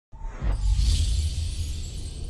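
Logo intro music: a deep bass rumble comes in about half a second in, with a bright, shimmering high sweep rising over it.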